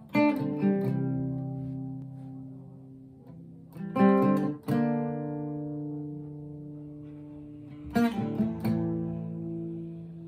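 Acoustic guitar with a capo, playing slow strummed chords. A chord is struck about every four seconds, three times in all, and each is left to ring and fade.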